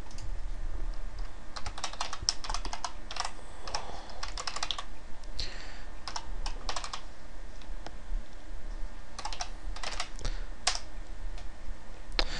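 Typing on a computer keyboard: several short runs of quick keystrokes with pauses between them, over a steady low hum.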